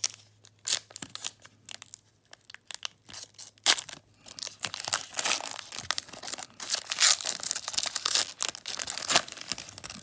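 A foil trading-card pack being torn open and its wrapper crinkled in the hands. A few light handling clicks come first, and the tearing and crinkling turns dense from about four seconds in until near the end.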